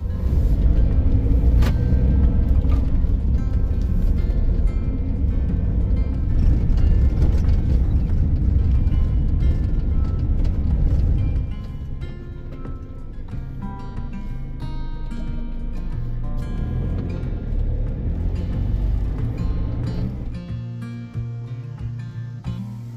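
Van driving: a low rumble of engine and road noise that comes in loud at once and drops about halfway through. Background music plays over it throughout.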